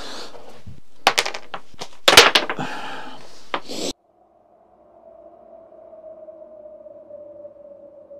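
Two sharp clattering impacts about a second apart, from ice cubes being flicked up off a cloth and landing on a hard surface. The sound then cuts off suddenly, and a faint, steady, humming tone follows.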